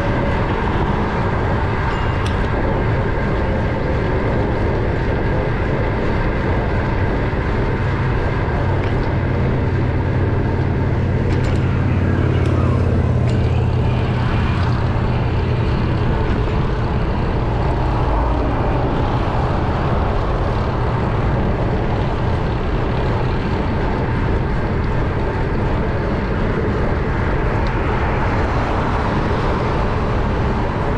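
Steady wind rushing over a GoPro action camera's microphone while cycling, mixed with road traffic noise from passing cars; the low rumble swells for several seconds in the middle.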